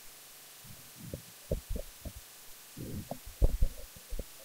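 A few dull, low thumps and knocks at irregular moments, the loudest pair about three and a half seconds in.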